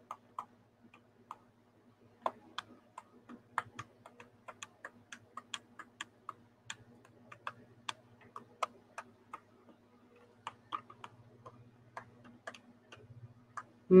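Faint, irregular clicking at a computer, a few light clicks a second, as chat is scrolled through on screen, over a faint steady low hum.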